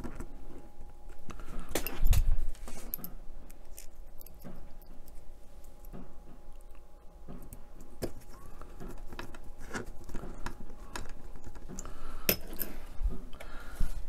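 Small clicks and taps of fingers and a precision screwdriver working a plastic cable clamp onto a plastic model chassis beam, fixing it loosely with a tiny screw. A couple of louder knocks, about two seconds in and near the end.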